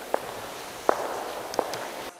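Hard-soled footsteps on stone paving: three sharp, echoing steps about three-quarters of a second apart.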